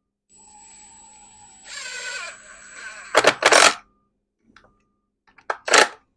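Makita 18-volt cordless impact driver with a 10 mm socket driving short hex-head screws into a wooden board. A steady motor whine grows louder under load about two seconds in, then comes a loud short burst just after three seconds and another near the end.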